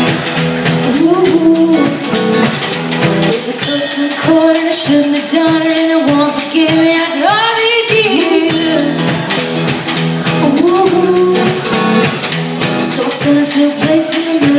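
Live band music: women singing through a PA over electric guitars, with sustained, wavering vocal lines and steady strummed accompaniment.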